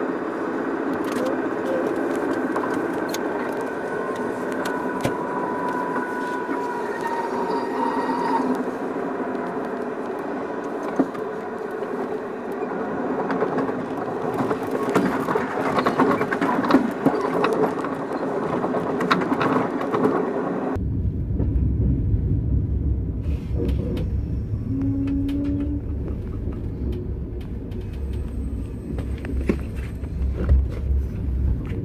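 Running noise heard inside a Thalys high-speed train carriage as it rolls into the station: a steady rumble with faint high tones over it. About two-thirds of the way through the sound changes suddenly to a deep low rumble with the treble gone.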